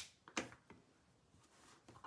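Near silence with a few faint, short taps and clicks from a clear acrylic stamp block being pressed down and handled on paper.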